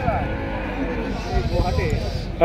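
Cattle mooing against a background of many people talking.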